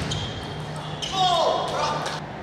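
Table tennis rally in a large hall, ending with a short, loud, falling squeal about a second in.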